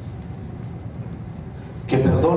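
Steady low hum of the hall's room tone, with a man's voice starting just before the end.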